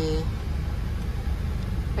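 Automatic carwash water spray hitting the car, heard from inside the cabin: a steady rushing hiss over a low rumble.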